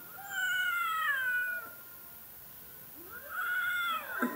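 Domestic cat meowing twice: a long call that falls in pitch at its end, then a second, shorter call starting about three seconds in that rises and then holds.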